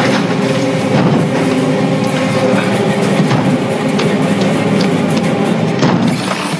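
Dense, droning film score of held, clashing tones, with scattered knocks and thuds through it.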